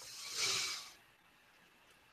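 A single soft breath blown out into a headset microphone: one rush of air that swells and fades within about a second.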